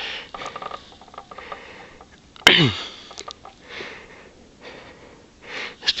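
A person breathing and sniffing, with a short voiced sound about halfway through that drops quickly in pitch, and a breath drawn in near the end.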